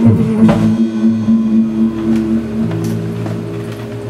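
A rock trio of electric guitar, bass guitar and drum kit playing live in an instrumental stretch between sung lines: chords ring out held, with a drum hit about half a second in, and the bass moves to a new note a little before the middle.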